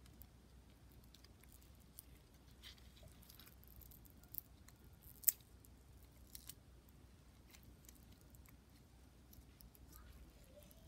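Faint crackles and clicks of fingers handling a zebra haworthia's stiff leaves and soil while working an offset loose from the base of the plant, with a sharper click a little after four seconds and the loudest one about five seconds in.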